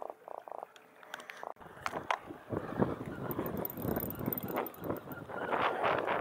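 Atlantic croaker held in the hand croaking: two short buzzy bursts of rapid pulses right at the start. After about a second and a half, louder irregular rustling and knocks of handling and wind take over.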